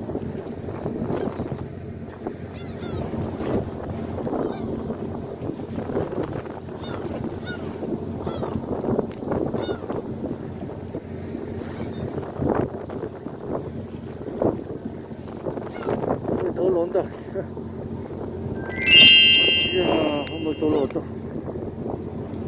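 Fishing boat's engine running steadily, with gulls calling again and again around the boat. Near the end a loud high-pitched tone sounds for about two seconds.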